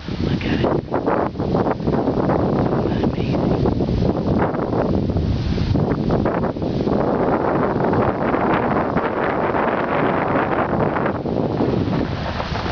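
Strong wind buffeting the microphone, a loud, gusting rumble that rises and falls throughout.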